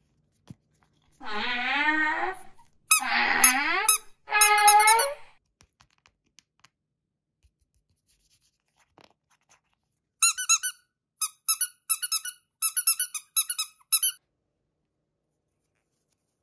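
Squeaky rubber toy being squeezed by hand: three longer squeaks with wavering pitch in the first few seconds, then a quick run of about nine short, high squeaks near the end.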